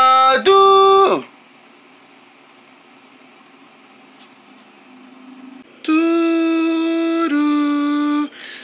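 A person singing a wordless intro jingle: the last sung notes end about a second in, then only faint room noise for several seconds, then two long held sung notes start near six seconds.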